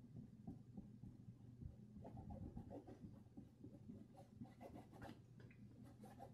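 Faint scratching of a flat paintbrush dragged across textured canvas, applying acrylic paint in short strokes that come thicker from about two seconds in, with a few light ticks near the end.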